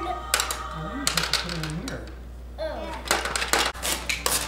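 Rapid plastic clicking and clattering from a Hungry Hungry Hippos game, its hippo levers and plastic marbles knocking on the plastic board, with low voices among the clicks.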